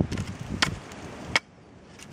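Side axe chopping small chips off a seasoned birch mallet handle: two sharp chops less than a second apart.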